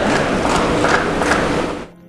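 Large concert audience applauding and cheering, a dense wash of clapping that cuts off abruptly near the end.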